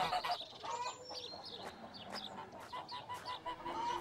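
Chickens clucking faintly, a scatter of short calls.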